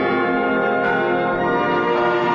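Channel intro theme music: church bells pealing over held orchestral brass chords.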